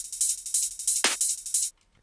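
Hi-tech psytrance track playing back from the DAW with the kick and bass dropped out. A bright hissing wash carries on, cut by two quick downward-sweeping zaps about a second apart, and playback stops abruptly shortly before the end.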